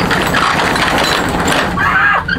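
Roll-up rear door of a box truck rattling as it is pushed up open, a dense clattering run that ends a little before the end.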